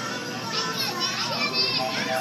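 Young children's high voices chattering and calling out over background music and the general din of a busy game arcade.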